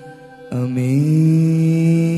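Male voice singing a Gujarati song with harmonium accompaniment. After a quieter first half second the voice comes in, slides up and holds one long note.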